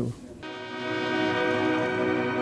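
An orchestra's bowed strings, violins among them, holding one long, steady chord that comes in about half a second in after a brief lull.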